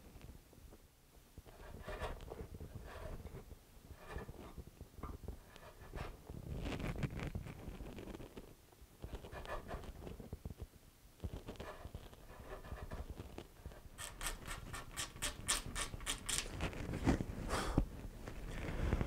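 Hand chisel paring wood out of the end-wedge slot in a guitar's side and end block: irregular short scraping strokes, then a quick run of sharper scrapes near the end.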